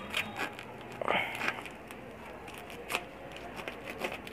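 Packing tape torn from a cardboard shipping box as its flaps are pulled open: a few short rips and scrapes, the longest about a second in, and a sharp one near three seconds.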